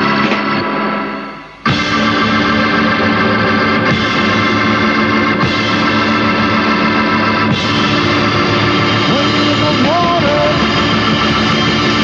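A rock band led by a Hammond organ holding thick, sustained chords. In the first second and a half the music sinks sharply, then it cuts back in suddenly at full level and stays steady. A short gliding melodic line rises over the chords later on.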